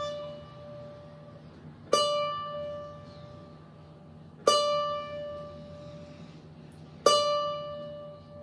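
Rozini student-model cavaquinho: one steel string plucked three times, about two and a half seconds apart, the same note D each time, left to ring and fade while its tuning is checked on a clip-on tuner. The note sits between in tune and a little sharp, a sign of the instrument's imperfect intonation along the neck.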